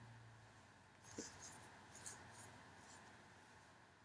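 Near silence: faint room tone and hiss, with two tiny clicks about a second and two seconds in.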